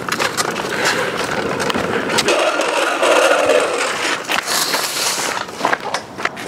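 Hard plastic wheels of a Razor Flash Rider 360 drift trike rolling and scraping over pavement, a continuous rough rumble broken by sharp clicks. A brighter hissing scrape comes in a little past four seconds in.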